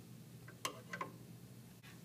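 Pair of shears snipping through the serger's thread-tail chain: two short, sharp snips close together, about a second in.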